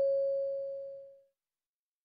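The fading tail of a single bell-like chime tone, which dies away about a second in. In a recorded listening exam it is the cue tone that closes the dialogue before the question is read again.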